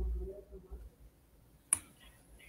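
A low muffled thump, then a single sharp click near the end.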